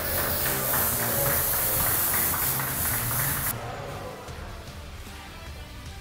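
Stage CO2 jet cannons hissing loudly over background music, cutting off suddenly about three and a half seconds in and leaving the music alone.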